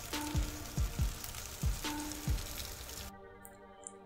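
Salmon fillets sizzling on foil on a hot gas grill, with frogs croaking in the background in a repeated rhythm about twice a second. A little after three seconds in, the outdoor sound cuts off to a faint low hum.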